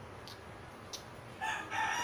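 A rooster crowing, one long call starting about one and a half seconds in, after a couple of faint clicks.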